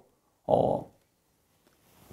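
A short breath from the man at the handheld microphone, close to it, about half a second in and lasting about a third of a second, between spoken phrases.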